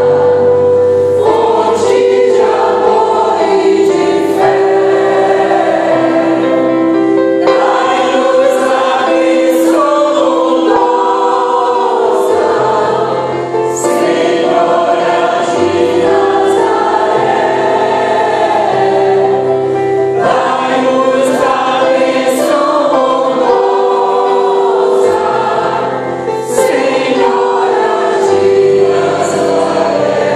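Mixed choir of men and women singing a hymn in slow phrases of long held notes, accompanied by a digital piano, with short breaths between phrases.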